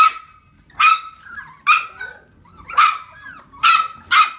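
A puppy barking: five short, high-pitched barks, about one a second.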